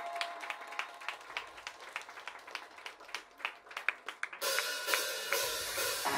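Quiet, sparse passage of a live progressive metalcore song: the drummer plays light hi-hat and cymbal strokes with almost no bass underneath. About four and a half seconds in, a brighter cymbal wash with faint held guitar notes swells up.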